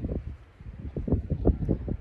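Wind buffeting a phone's microphone in irregular gusts.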